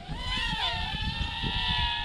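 Drocon DC-65 Mirage mini quadcopter's brushed motors and propellers whining in flight, the pitch wavering in the first second and then holding steady.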